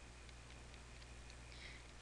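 Faint, scattered ticks of a stylus tapping and sliding on a tablet screen while handwriting, over a low steady hum.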